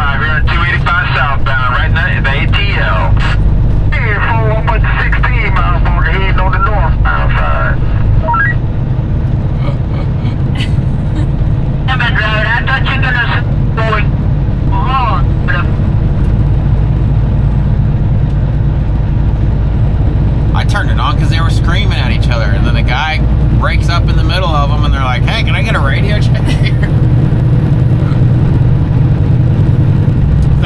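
Steady low drone of a Kenworth semi truck's engine and road noise, heard inside the cab while driving. Voices talk over it at intervals.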